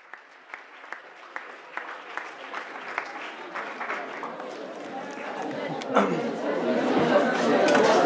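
Audience in a large hall murmuring, the chatter growing steadily louder over the last few seconds, with a regular run of sharp taps or claps, about two to three a second.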